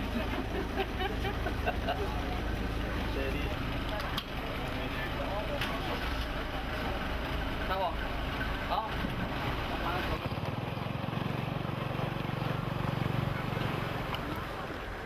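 Scattered voices of a group of people talking outdoors over a steady low rumble; the rumble drops away about ten seconds in.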